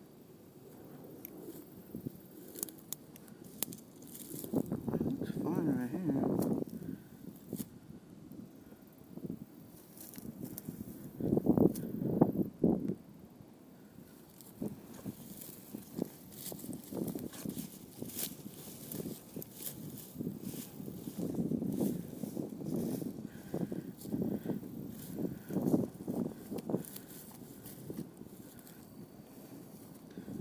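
Dry grass and weed stems rustling and crackling close to the microphone, with many scattered small clicks and a few louder, muffled stretches as the plants brush past.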